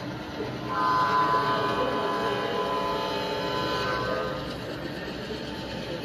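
G scale model diesel locomotive's onboard sound system sounding its horn: one held blast of about three seconds, starting about a second in. Under and after it runs the steady rumble of the model train's wheels and motor as it passes.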